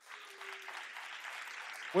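Audience applauding: a steady patter of many hands clapping. A man's voice starts speaking over it near the end.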